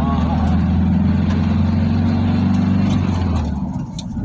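Engine and road noise of a moving car heard from inside the cabin: a steady low drone that drops away near the end.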